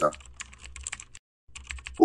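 Typing sound effect: a rapid run of key clicks as text is typed out letter by letter, breaking off for a moment just past the middle and then resuming.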